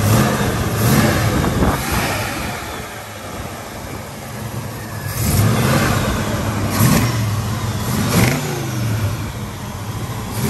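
Car engine in a rusted mid-1950s Chevrolet, idling and revved in about five short throttle blips that rise and fall back to idle. It is running cold, and the owner says it doesn't like running cold.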